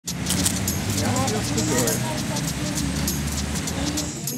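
Street ambience: a steady low rumble of road traffic with indistinct voices and scattered light clicks.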